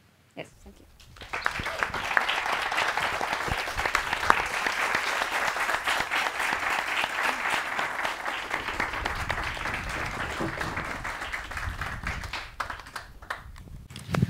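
Audience applauding, starting about a second in, holding steady and dying away near the end.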